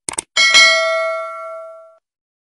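Sound effect of a mouse click on a notification bell icon: two quick clicks, then a single bell ding that rings and fades away over about a second and a half.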